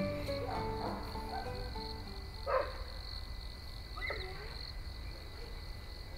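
A steady, high-pitched chorus of insects at dusk, with a couple of short animal calls about two and a half and four seconds in. Plucked background music fades out in the first second.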